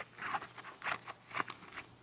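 Handling noise: the nylon fabric of a pocket organizer pouch rustling and scuffing as a chapstick tube is pushed into its mesh inner pocket, a handful of short, light scuffs.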